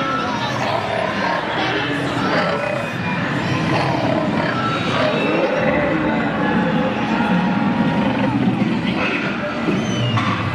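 Crowd chatter: many voices talking at once, without a break.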